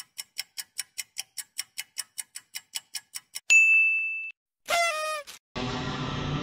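Countdown-timer sound effect ticking quickly, about five ticks a second, ending in a bright bell ding about three and a half seconds in. A short wavering pitched sound effect follows, then music with guitar starts near the end.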